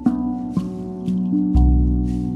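RAV steel tongue drum, tuned to a B Celtic scale, playing slow ringing notes, about four strikes that sustain and overlap. One deep shaman drum beat sounds about one and a half seconds in.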